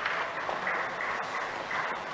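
Scattered applause, an even patter of clapping, greeting the payload fairing separation.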